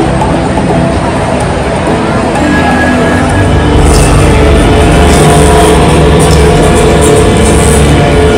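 Loud live concert music played over a stadium sound system and picked up by a phone's microphone. It swells about four seconds in, when a heavy bass comes in.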